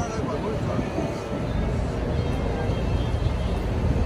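Wind buffeting the microphone on the open deck of a moving ferry, over a steady low rumble from the boat.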